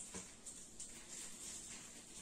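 Faint, soft rustling and brushing of cotton jersey fabric as hands smooth and straighten it on a tabletop, with a few light strokes over a low hiss.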